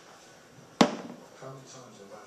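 A plastic protein shaker bottle set down on the counter with a single sharp knock.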